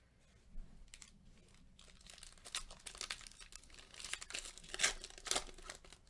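Foil wrapper of a Panini Mosaic basketball card pack being torn open and crinkled by gloved hands: a run of sharp crackles that gets busier from about two seconds in and is loudest near the end.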